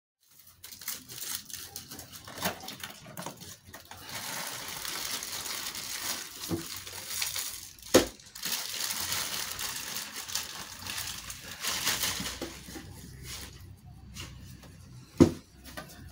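Plastic packaging crinkling and rustling as it is handled and pulled off a new prosthetic leg liner, with two sharp knocks, about eight seconds in and about a second before the end.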